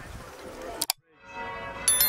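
A faint outdoor hum, a sharp double click just before the halfway point and a moment of silence. Near the end a bell rings out suddenly with several clear, steady tones.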